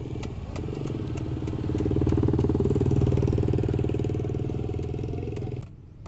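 A motor vehicle's engine running close by, swelling to its loudest two to three seconds in and then easing off, stopping abruptly near the end.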